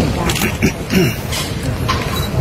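A man's voice breaking off, then brief voices and a few sharp clicks and knocks, as of phones and microphones being handled close to the recording.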